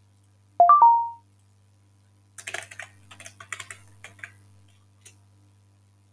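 A web page's short electronic copy sound effect: a quick three-note blip about half a second in. Then, a couple of seconds later, about two seconds of computer keyboard typing and clicks.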